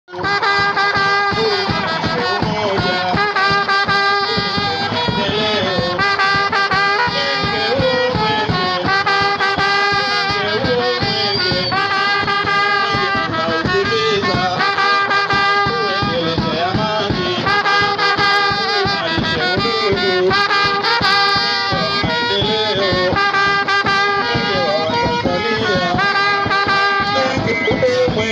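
Brass band playing a lively tune: trumpets and trombones carry the melody over a steady drumbeat.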